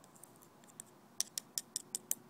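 A metal knife blade tapping on concrete while flattening a pile of powder: a run of sharp clicks, about five a second, starting a little past halfway.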